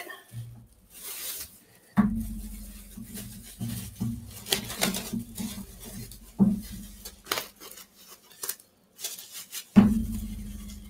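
A clear plastic bag and bubble wrap crinkling and rustling as hands work them around a small trinket, with scattered clicks and light taps of handling on the table.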